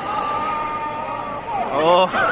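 Basketball arena crowd noise: a din of many voices with a steady held tone, then a voice rising in pitch and getting louder near the end.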